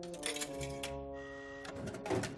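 Vending machine clicking and then whirring for about a second as it dispenses a snack, under held music chords.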